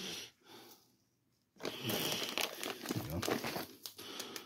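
Dry crinkling and rustling as a clump of static grass fibres is pulled apart by hand and sprinkled onto a model base. A short burst comes at the start, then a longer stretch from about a second and a half in.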